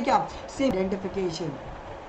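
A man speaking Hindi in a lecturing tone for about the first second and a half, then only low room noise.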